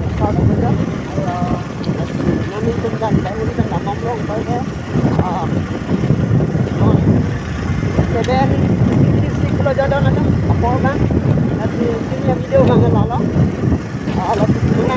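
Motorcycle under way, its engine running with wind rushing over the microphone in a steady low rumble.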